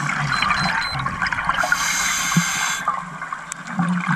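Scuba regulator breathing heard underwater: a steady crackle of bubbles, with a hissing breath in the middle.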